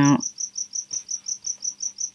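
Insect chirping: a steady, high-pitched pulse repeating about seven times a second.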